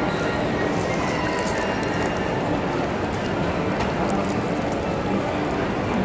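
Steady background hubbub of a busy shop kitchen: indistinct voices over a constant hum, with no single sound standing out.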